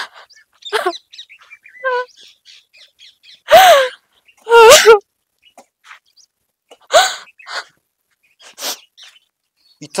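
A woman crying aloud in loud wailing sobs, two close together near the middle and another a couple of seconds later, with smaller sobs and catches of breath between them. Birds chirp faintly in the background.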